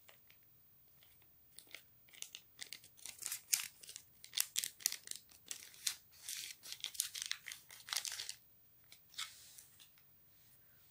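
A sachet of Alsa baking powder being torn open and crinkled by hand, a quick run of short ripping and rustling sounds lasting several seconds, with two last rustles near the end.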